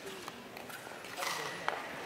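Ice-rink crowd ambience: indistinct voices and chatter of people around the rink, with a short hissing scrape a little past a second in that ends in a sharp click.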